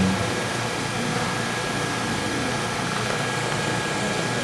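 Steady, even background noise with a faint thin tone running above it.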